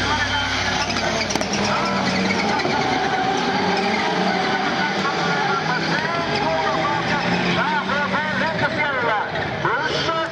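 Rallycross cars' engines running hard at race pace, with a voice over them. Gliding pitch changes near the end.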